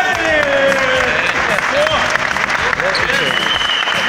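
Applause from a group of people, with a man's drawn-out cheering shout in the first second and other voices over the clapping.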